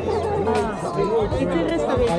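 People talking among themselves, with music playing underneath the voices.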